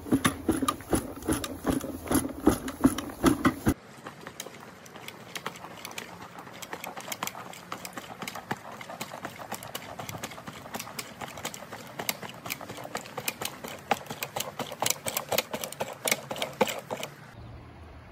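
Push broadcast spreader rattling with rapid, continuous clicking from its gears and spinner as it is wheeled across a lawn, throwing out coffee grounds. The clicking drops quieter about four seconds in.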